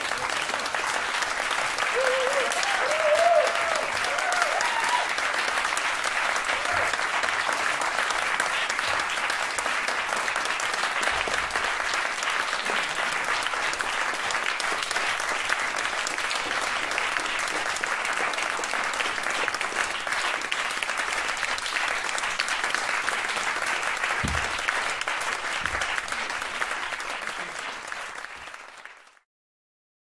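Audience applauding, with a few brief rising voice calls about two to five seconds in; the applause fades out near the end.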